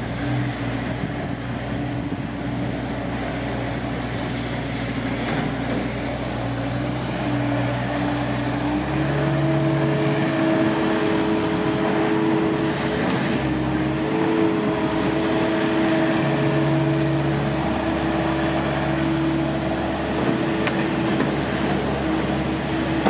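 Doosan DX80R midi excavator's Yanmar diesel engine running steadily while the machine slews and works its boom and dipper. About nine seconds in the engine note steps up in pitch and gets louder, and stays up with small dips.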